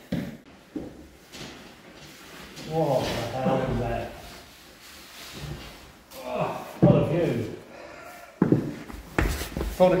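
A few knocks and thuds from a person climbing over a banister onto a bare wooden staircase, with indistinct voices in between.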